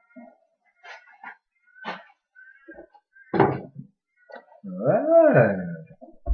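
A man's voice drawing out a long, sing-song "well", its pitch rising and then falling. Before it come a few short scattered noises and one louder burst about halfway through.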